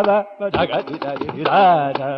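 Live Carnatic music: a melodic line sung with heavy gamaka, the pitch sliding and oscillating, with violin accompaniment and sharp mridangam strokes. A held note at the start drops away briefly before the ornamented phrases resume.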